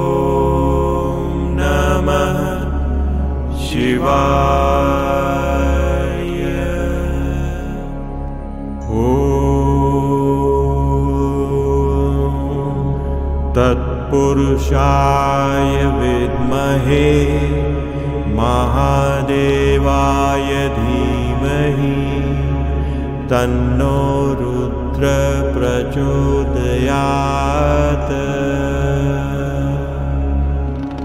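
A male voice chants a Sanskrit Shiva mantra in long held, gliding notes over devotional music with a low pulsing drone.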